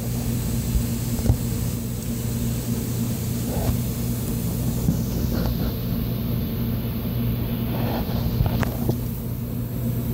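A machine running with a steady low hum, with a few faint clicks and taps.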